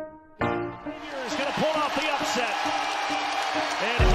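Basketball sneakers squeaking on a hardwood court, many short quick squeaks over the steady noise of an arena crowd, starting about half a second in. A held music chord fades out just before.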